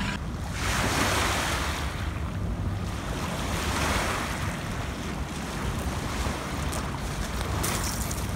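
River water washing onto a pebble shore, surging louder about a second in and again around four seconds, with wind rumbling on the microphone.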